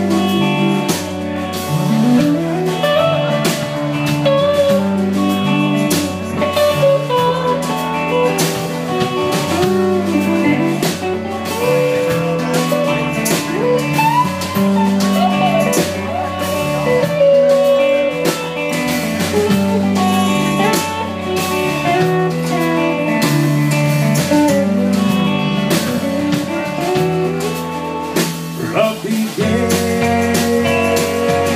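Live southern rock band playing an instrumental break: drums, bass and guitars, with a lead melody line bending in pitch over the top.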